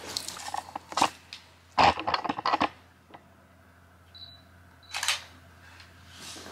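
Sharp clicks and clatter, loudest in a cluster about two seconds in, then a brief high beep about four seconds in and another short burst of clicks.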